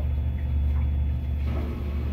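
Front-loading washing machine draining: its drain pump hums steadily and low.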